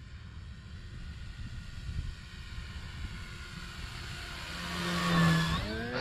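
Electric motor and propeller of an RC model plane, an E-flite Carbon Z Cessna 150T, growing louder as it makes a low, close pass. The whine peaks and drops in pitch about five seconds in, over a steady wind rumble on the microphone.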